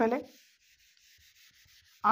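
A whiteboard being wiped with a handheld eraser: a faint, even rubbing hiss as the marker writing is erased.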